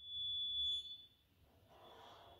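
Chalk squeaking on a chalkboard as a line is drawn: one steady high squeal for just under a second, followed by faint chalk scratching near the end.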